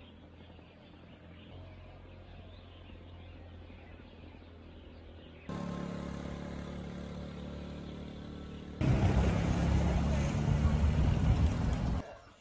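Faint outdoor ambience, then after a sudden cut a vehicle engine running steadily while driving along a road. About nine seconds in, a much louder rushing noise takes over and stops abruptly at the end.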